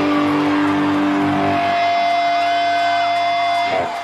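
Live brega band with guitar holding long sustained notes, which stop abruptly shortly before the end.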